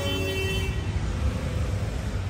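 Low, steady rumble of a car idling, with street background noise.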